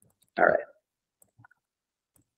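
A few faint, quick clicks of computer keyboard keys being typed, about a second in.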